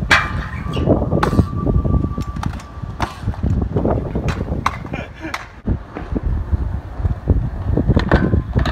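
Wheels of a stunt scooter and then a skateboard rolling over concrete: a constant low rumble with several sharp clacks.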